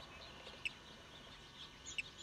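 Faint, scattered bird chirps, a few short high notes, over quiet background hiss.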